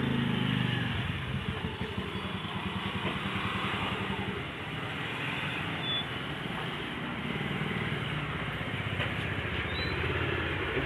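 Scooter and motorcycle engines running at low speed as the two-wheelers idle and creep in, a steady low rumble.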